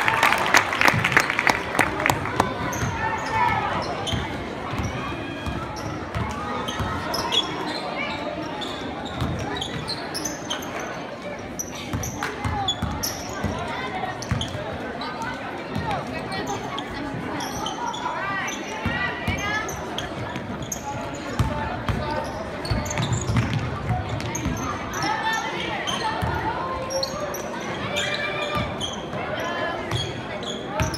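Basketball game sounds in a gym: the ball bouncing on the hardwood court, with voices of players and spectators calling out throughout, echoing in the hall. It is loudest at the very start.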